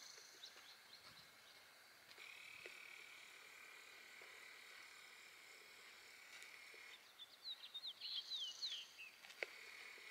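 Faint outdoor ambience with wild birds singing: a quick run of short, falling high chirps near the end, and a steady high-pitched buzz or trill held for several seconds before it.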